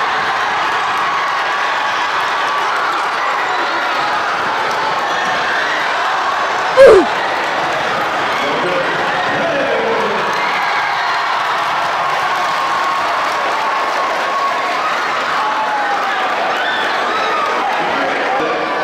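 A large crowd in a gymnasium cheering and shouting steadily. About seven seconds in there is one short, very loud burst that drops sharply in pitch.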